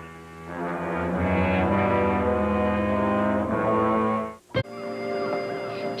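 Brass-led transition music: several sustained notes held together as one chord, which ends abruptly about four and a half seconds in. A quieter steady tone follows.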